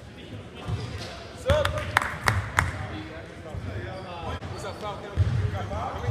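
A basketball bouncing on a hardwood gym floor a few times as a player dribbles at the free-throw line, then play resumes. Voices are heard alongside.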